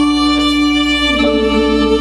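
Violin playing long held notes over a sustained accompaniment in a slow instrumental intro, moving to a new chord a little over a second in.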